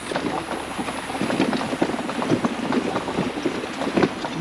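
Mobility scooter rolling over a rough dirt trail, rattling and clacking over the bumps with a steady rumble underneath.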